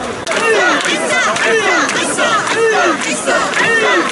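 A crowd of mikoshi bearers shouting a rhythmic carrying chant together, many voices rising and falling about twice a second as they heave the portable shrine.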